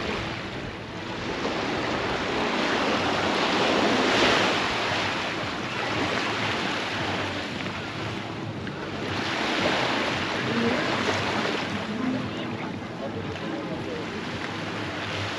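Sea surf breaking and washing up a beach, swelling and easing in slow surges, loudest about four seconds in and again around ten seconds.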